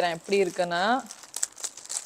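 A clear plastic garment bag crinkling as hands open it to take out a dress: irregular crackles, mostly in the second half.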